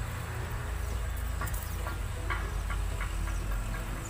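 A low steady hum under faint hiss, with a few faint ticks.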